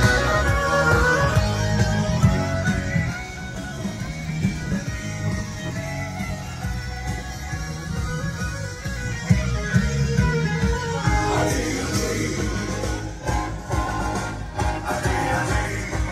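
Music: a farewell song with guitar accompaniment and singing.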